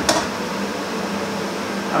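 Chicken and vegetable stir-fry sizzling steadily in an uncovered frying pan as its liquid reduces, over a steady low hum, with a short knock at the very start.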